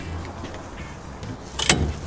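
A low steady hum, with a single short, sharp knock near the end.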